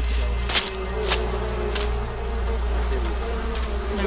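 A disturbed swarm of African honeybees buzzing in a steady hum, with a high thin whine running until about three seconds in and a couple of brief clicks.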